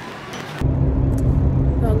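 Steady road and engine rumble inside a moving car's cabin, with a steady low hum. It cuts in abruptly about half a second in; before that there is only a faint rustle of clothing against the phone.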